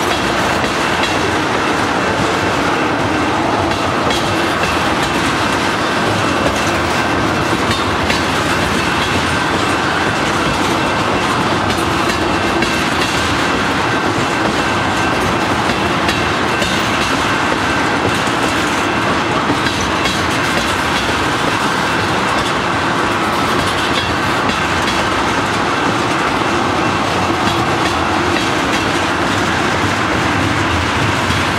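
Freight train of tank cars rolling steadily past at close range, wheels clicking over the rail joints under a continuous rolling noise.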